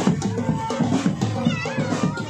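Drum band music with a quick, steady beat, and a high warbling tone about one and a half seconds in.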